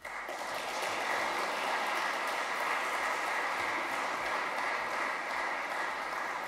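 Audience applauding, starting suddenly and keeping up at a steady level.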